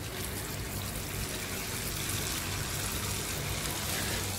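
Jalebi batter frying in hot oil in a small non-stick pan: a steady sizzle.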